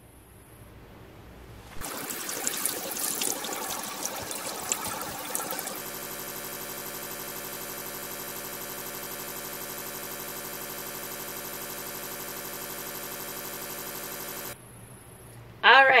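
Tap water running from the faucet onto a tie-dyed shirt in a sink, rinsing out excess dye. It starts about two seconds in with uneven splashing, then settles into a perfectly steady, unchanging sound that stops shortly before the end.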